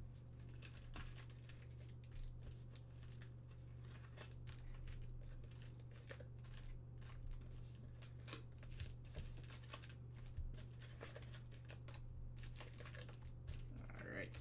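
Foil trading-card packs crinkling and rustling in short, scattered bursts as they are pulled from a cardboard box and stacked in the hand, over a steady low hum.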